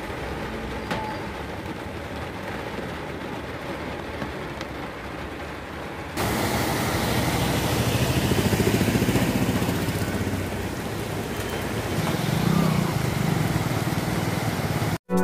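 Rain and water on a flooded road, a steady hiss that jumps louder about six seconds in. Near the end, a motorcycle engine rumbles as the bike rides through the floodwater.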